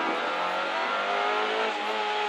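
Renault Clio rally car's engine running, heard from inside the cabin, its note easing slightly down in pitch as the car slows for a left hairpin.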